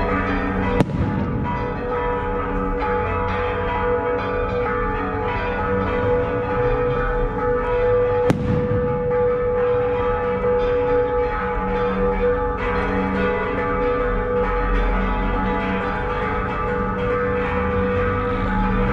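Church bells ringing continuously, a dense wash of overlapping bell tones, with two sharp clicks, one about a second in and one about eight seconds in.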